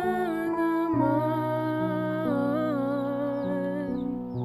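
A man's voice holding a long, wavering note with vibrato over sustained instrumental backing chords and a low bass note, part of a sung song cover.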